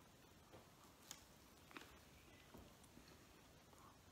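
Near silence, with a few faint soft clicks of a man chewing a bite of a warm roast beef and cheese sub sandwich.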